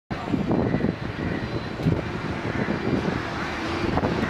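Steady low rumble of vehicle engine noise, with faint distant voices mixed in.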